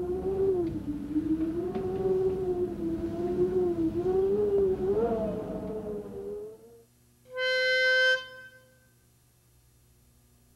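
A wavering held note that slides up and down for about six seconds. Then, after a short gap, a pitch pipe sounds one steady reedy note for about a second, giving the B flat for a barbershop chorus.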